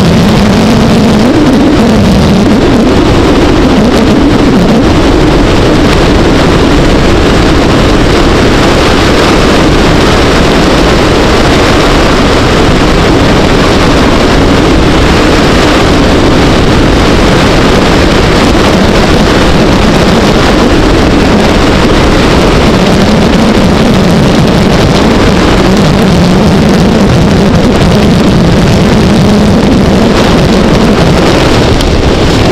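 Motorcycle engine running at road speed, its note drifting up and down with the throttle, under heavy wind rush on the camera microphone. Loud and continuous throughout.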